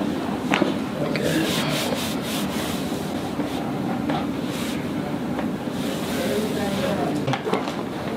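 Hands rubbing and pressing over a cotton T-shirt on a person's back during a chiropractic adjustment: a steady fabric-rubbing noise. A few short clicks or taps come through, several close together about two seconds in.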